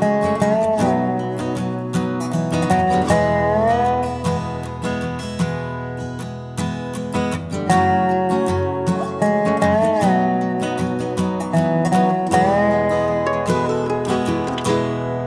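Instrumental intro of a country-style song: strummed acoustic guitar chords under a lead melody that slides up into several of its notes.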